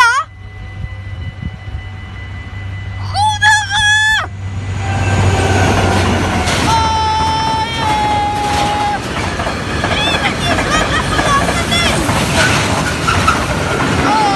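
A train passing close by at a level crossing: loud, steady rushing noise of wheels on rail starts about four seconds in and carries on to the end. Before it come two short, loud pitched calls with bending tones, one at the start and one about three seconds in.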